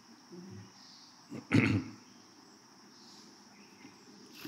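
A person's single short cough about one and a half seconds in, over a faint, steady high chirring of insects.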